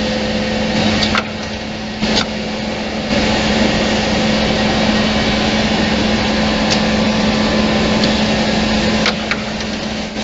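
Automatic double-end drilling and cutting machine running: a steady mechanical din of motors and spindles with a constant hum. A few sharp clicks sound through it, and it runs a little quieter for about two seconds, starting about a second in.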